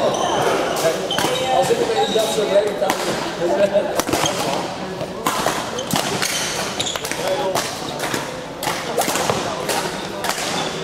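Badminton rally: sharp racket strikes on the shuttlecock and players' footsteps thudding on the court floor, repeated irregularly, ringing in a large sports hall.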